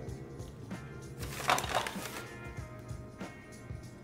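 Quiet background music with handling noise: a short rustle from about a second in, and a few faint clicks as metal safety razors are picked up and put down.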